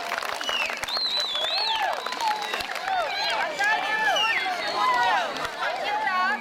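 Many children's voices talking and shouting over one another, high-pitched and overlapping, with no single clear speaker.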